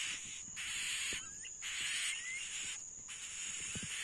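Insect chorus: a steady high-pitched whine over a rasping hiss that cuts out briefly about once a second, with two faint short chirps.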